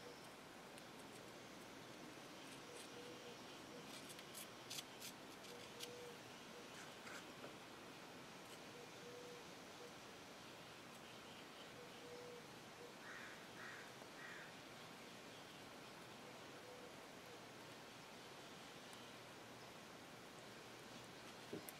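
Near silence: room tone with a few faint small clicks and ticks.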